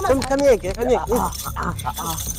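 Mostly speech: raised voices in a heated argument, with several short light clicks in the second half.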